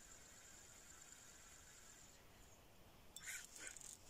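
Near silence outdoors, with a faint steady high whine that stops about halfway through and a few brief scratchy sounds near the end.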